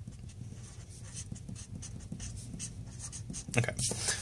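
Crayola felt-tip marker writing on paper: a run of short, quick strokes as an equation is written out.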